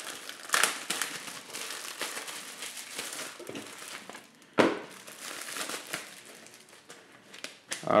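Clear plastic bag crinkling as it is opened and pulled off a stack of paper manuals, with paper rustling as the booklets are handled; louder sharp crackles come about half a second in and again a little past halfway.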